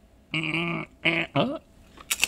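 A man's wordless vocal sounds, three in a row: one held note of about half a second, then two shorter ones, the last sliding up and down in pitch, with pauses between.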